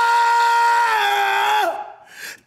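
A man's long, held excited yell on one steady pitch. It dips slightly about a second in and trails off just before the end.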